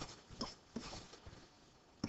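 Faint short scratches and taps of a pen writing on an interactive whiteboard, over low room tone.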